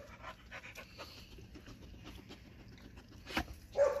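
A dog panting softly and steadily close by, with a single sharp click near the end.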